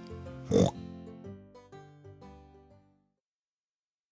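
A single short pig-like oink about half a second in, over gentle children's background music that fades out about three seconds in.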